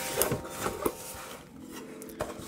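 A cardboard mailer box being pulled open by hand: rubbing and scraping of cardboard, with a few sharp clicks in the first second as the taped lid comes free.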